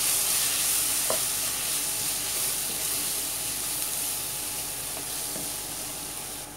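Onion, tomato and spice masala sizzling in a nonstick wok while a wooden spatula stirs and scrapes through it, with one sharp knock of the spatula about a second in. The sizzle eases slightly toward the end.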